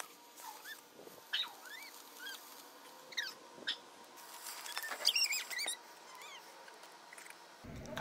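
Birds calling faintly in the background: short scattered chirps, with a quick run of higher calls about five seconds in, over a quiet outdoor hush.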